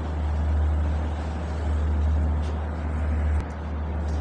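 Steady low rumble with hiss, like motor or traffic noise, without speech. It changes abruptly about three and a half seconds in.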